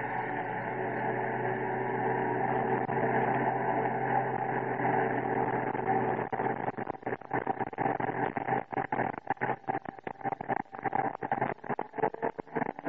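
A four-wheel-drive vehicle's engine running as it comes up a rough dirt track, growing louder as it nears. From about halfway through the sound turns choppy, cutting in and out rapidly.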